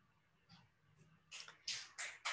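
Near silence: room tone with a couple of faint ticks, then a few short hissy bursts in the last half second or so.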